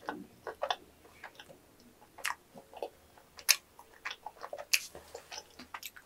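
Chewing a mouthful of chewy yakgwa (Korean honey cookie): irregular short clicks and smacks from the mouth, the loudest about three and a half and about four and a half seconds in.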